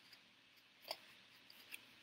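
Near silence, with one faint click about halfway through and a few small ticks near the end: sheets of paper being handled and folded by hand.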